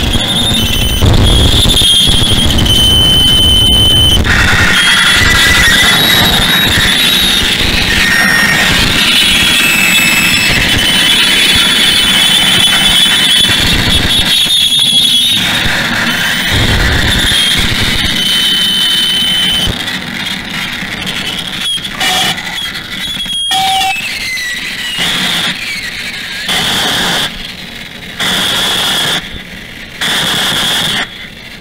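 Harsh noise electronics: a dense, loud wall of noise with high, wavering squealing tones. In the last third it breaks up into choppy blocks of noise that start and stop abruptly.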